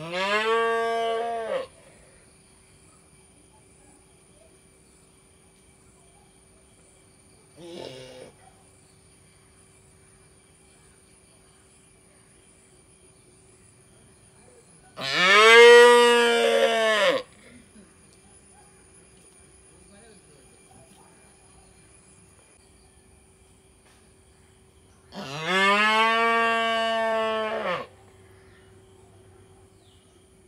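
A young calf mooing: three long calls, each rising and then falling in pitch and lasting about two seconds, near the start, about 15 s in and about 25 s in, with one short faint call about 8 s in.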